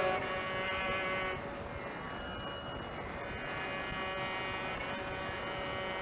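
Faint steady tanpura drone with a light buzz, heard on its own under the hiss of an old concert recording, in the pause between songs.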